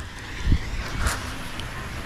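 A fishing rod being cast over a lake: a dull thump about half a second in, then a short swishing hiss about a second in as the rod whips forward and the line goes out.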